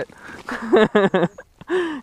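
A man laughing in a few short chuckles, then a rising vocal sound near the end.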